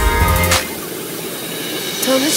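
Background music with a beat that drops out about half a second in, leaving the steady rush of a waterfall pouring into its plunge pool.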